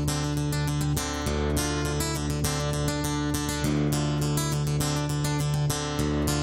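Acoustic guitar strummed in a quick, even rhythm: a solo instrumental song intro, with no singing.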